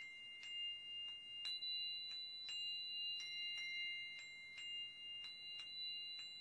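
Singing bowl rubbed around its rim with a wooden stick, holding a steady high ringing tone with light ticks about twice a second.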